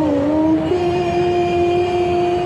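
A woman's voice chanting devotional dzikir through a microphone, holding long sustained notes. The pitch wavers, then steps up a little under a second in and is held steady, over a low steady rumble.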